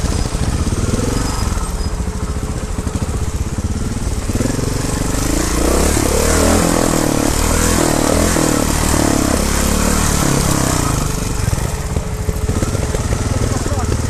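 Trials motorcycle engine running as the bike picks its way down a rocky forest trail, its note rising and falling with the throttle, most plainly in the middle of the stretch.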